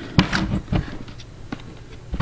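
A few light knocks and scrapes as a wooden camp box lid held down by shock cords is handled one-handed, the strongest knocks near the start.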